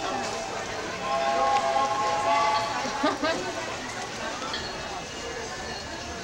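Indistinct voices of people in an outdoor crowd, with a steady held note about a second in that lasts about a second and a half.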